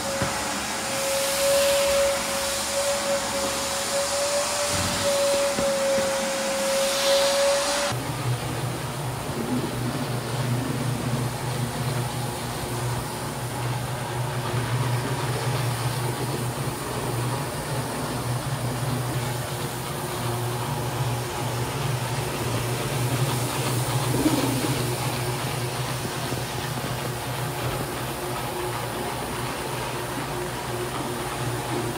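A wet/dry vacuum's motor whines steadily as it sucks up floor-stripping slurry. About eight seconds in, the sound changes abruptly to a rotary floor machine's motor humming steadily as its pad scrubs the wet stripper across the vinyl tile.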